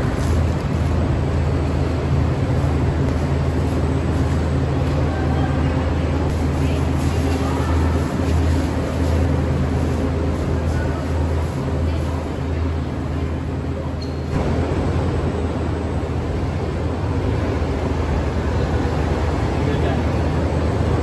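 Steady low hum of motorbike engines running in a covered parking garage, with voices in the background.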